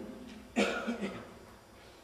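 A man coughs sharply about half a second in, followed by a weaker second cough, then a pause.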